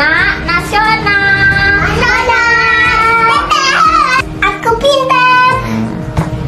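Two young boys singing together in long held notes.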